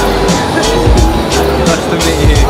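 Music with a strong, pulsing bass beat.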